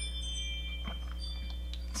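A pause in speech: steady low electrical hum, with a few faint high ringing tones fading out and two small faint clicks late on.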